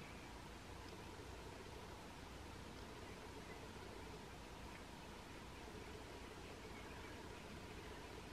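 Near silence: a faint, steady hiss of microphone room tone with a low hum underneath.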